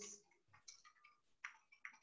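Faint computer keyboard clicks from typing: several scattered, irregular key taps.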